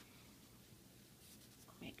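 Near silence: faint room tone, with a woman's voice starting a word near the end.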